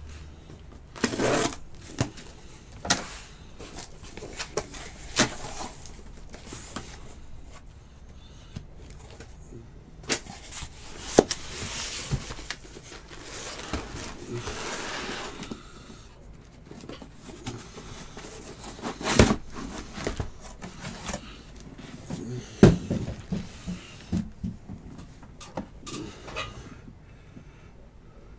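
Cardboard case and boxes of trading cards being opened and handled: scattered knocks and clicks, with a longer stretch of rustling packaging about ten to sixteen seconds in.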